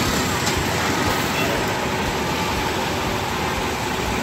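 Steady street traffic noise, with vehicle engines running.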